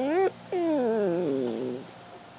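Puppy whining: a short cry rising in pitch that breaks off, then a longer cry sliding down in pitch and fading.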